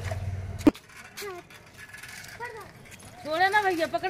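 A high-pitched child's voice in short calls, loudest near the end. A low rumble in the first moment stops with a sharp click.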